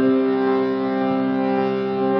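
Instrumental drone of several notes held steady together, starting suddenly at the very beginning and sounding on without a break, as accompaniment before a devotional song.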